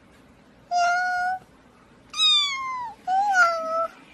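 Domestic cat meowing three times in a row, the second meow falling in pitch.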